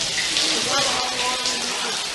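Communal showers running: a steady hiss of water spraying and splattering onto the floor.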